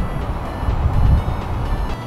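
A low, uneven rumble, with quiet background music under it; the rumble cuts off suddenly at the end.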